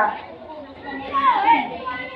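Children's voices chattering, with one child's voice rising and falling briefly about a second in.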